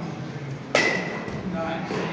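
A single sharp crack with a brief ringing tone about three quarters of a second in, over faint background voices.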